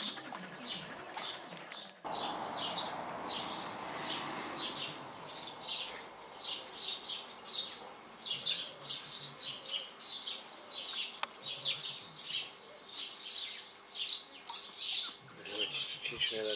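Small birds chirping: a steady run of short, high chirps, about two a second.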